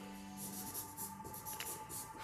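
Charcoal pencil scratching on paper in several short shading strokes.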